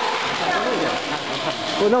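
People speaking Mandarin in the background over a steady noise haze. A nearer voice begins just before the end.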